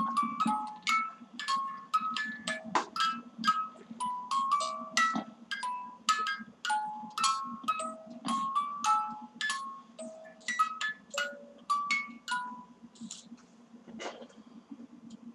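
Wind-up music box playing a tinkling melody of single plucked notes, about two or three a second, which stops shortly before the end.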